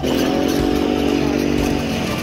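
E-Ton mini ATV engine running at a steady pitch while the quad is ridden.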